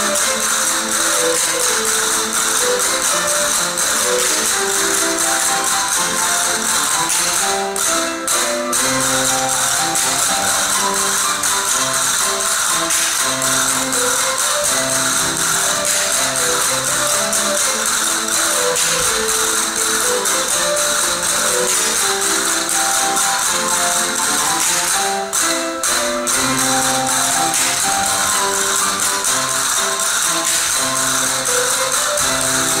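Music for the Spanish folk dance seguidillas manchegas, with castanets clicking in a dense, continuous rattle over a moving melody. The rattle breaks off briefly twice, about a third of the way in and again near the end.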